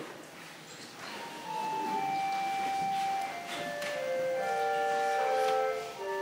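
Small choir singing in parts in a reverberant church, several voices holding long notes that step from pitch to pitch, entering about a second in.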